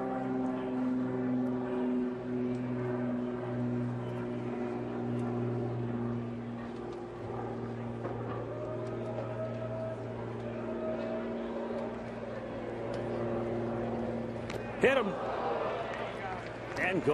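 Ballpark ambience under a steady, many-pitched droning hum that sinks slowly in pitch. About 15 s in there is a single sharp smack as the pitch strikes the batter, followed by crowd voices.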